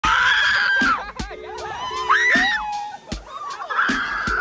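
Riders screaming on a river-rafting water ride: a long high scream at the start, another rising one about two seconds in, and a third near the end.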